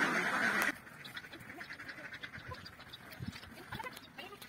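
A large flock of domestic ducks quacking together as a loud, dense chorus that cuts off suddenly under a second in. It leaves only faint scattered ticks and soft thumps.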